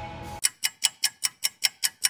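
The tail of the intro music fades out. About half a second in, a rapid, even clock-like ticking starts, about five sharp ticks a second, with silence between them.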